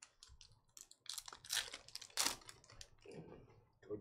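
Trading cards being handled and flipped through by hand: a run of short papery swipes and clicks, loudest about halfway through.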